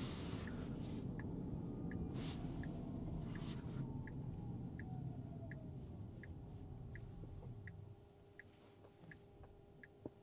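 Inside a Tesla Cybertruck's cabin, the turn-signal indicator ticks steadily about twice a second. Under it runs a low road and tyre rumble with a faint falling whine, which fades out near the end as the truck slows to a stop.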